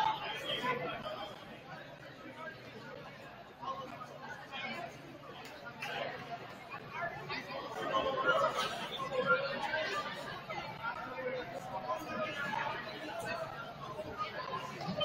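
Indistinct chatter of many voices echoing in a school gymnasium, with no single voice standing out; it grows a little louder about eight seconds in.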